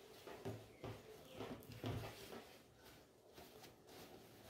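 Faint rustling and soft bumps of a cotton fabric bag lined with batting being handled and opened by hand, a handful of short rustles over the first two seconds or so.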